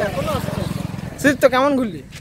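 A motorcycle engine running close by, its fast low pulsing under men's voices calling out over it.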